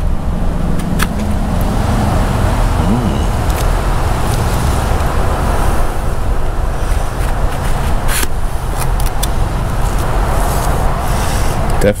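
A scraper drags softened antifouling paint off a fiberglass hull in slow motion, so the scrape comes out as a long, steady, low rasp with a few faint clicks.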